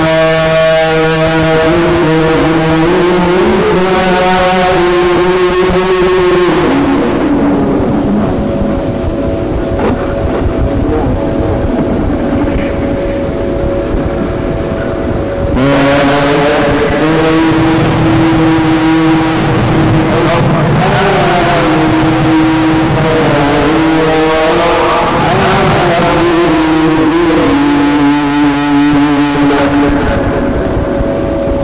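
A male reciter's voice in mujawwad Quran recitation, drawn out in long melismatic held notes whose pitch slowly bends and wavers. The voice is thinner and lower for a stretch in the middle before rising strongly again.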